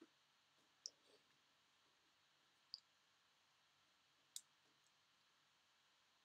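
Three sharp computer mouse clicks, about two seconds apart, over near-silent room tone.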